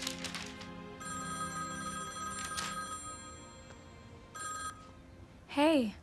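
Cell phone ringing with an electronic ringtone of steady high tones: one long ring from about a second in and a short one near four and a half seconds, over soft background music.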